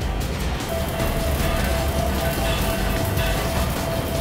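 Background music playing over the steady crackle and hiss of a stick-welding (shielded metal arc) electrode burning at about 120 amps, the arc struck about a second in.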